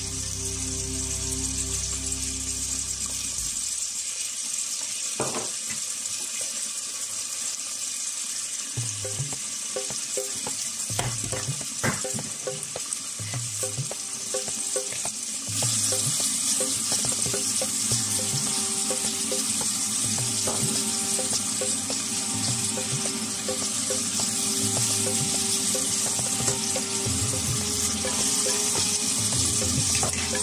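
Oil and fava beans sizzling in a stainless steel pot, growing louder about halfway through. There are a few knocks in the first half, and quiet background music plays.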